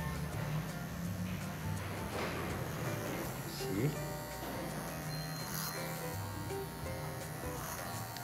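Electric hair clippers buzzing steadily, heard under background guitar music.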